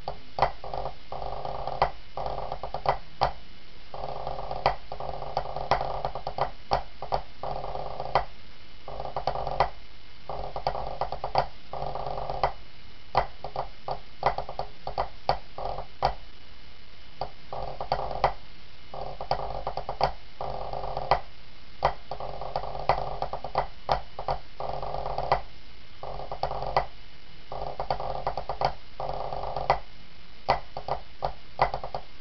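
Pipe band snare drum playing a competition score, with sharp strokes and accents over a sustained melody that comes and goes in phrases.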